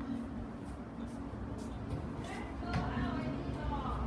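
A faint, distant voice speaking in the second half, over a low steady room hum, with a few soft clicks in the first half.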